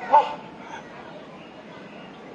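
Rhinoceros hornbill giving a single short, loud honk just after the start.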